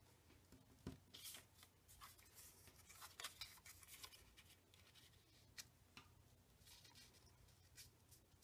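Faint handling of paper: a cardstock circle picked up, slid and pressed onto a scrapbook page, with light rustles and scattered small taps over a low steady hum.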